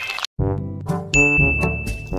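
A short edited-in musical sound effect: a quick run of chiming pitched notes, joined over the second half by one held high ding, all cutting off together at the end.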